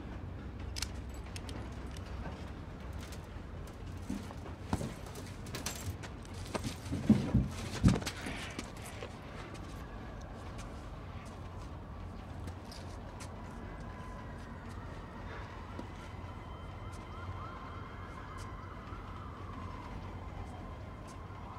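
Police sirens wailing in the distance, rising and falling, coming in about halfway through over a low steady rumble. In the first half there are a few sharp knocks and clatters, the loudest just before the sirens.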